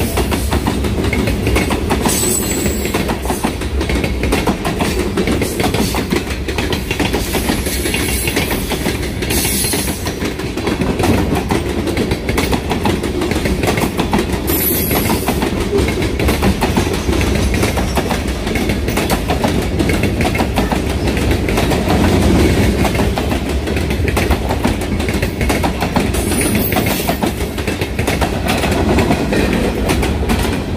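Freight train cars rolling past close by: a loud, steady rumble with rapid clattering of wheels over the rail joints, and a few brief high squeaks.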